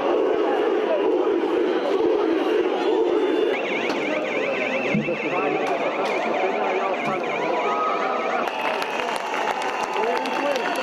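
A crowd of protesters shouting and clamouring. A little over three seconds in, a rapidly warbling electronic siren starts up over the crowd and runs for about five seconds before changing to a steadier high tone.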